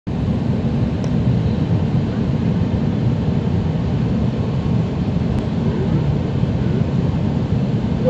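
Steady low rumble inside the passenger cabin of an Airbus A319 on final approach to landing: engine and airflow noise, even in level throughout.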